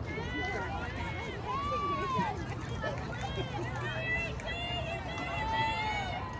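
Several high-pitched young voices shouting and calling across a softball field, overlapping and unclear, over a steady low hum.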